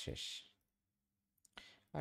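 A short breathy exhale from the narrator, then a pause broken by a faint computer mouse click before his speech resumes near the end.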